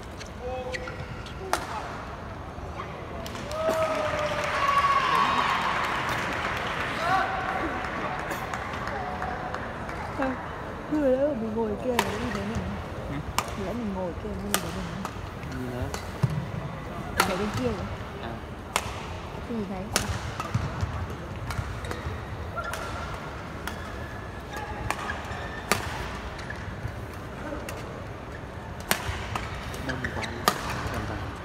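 Badminton rackets striking a shuttlecock in a rally: a series of sharp cracks, about one every second and a half, loudest in the second half. Arena crowd chatter and voices run underneath and swell between about four and eleven seconds in.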